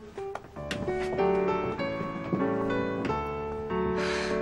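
Piano music: a run of notes, several a second, over held lower notes.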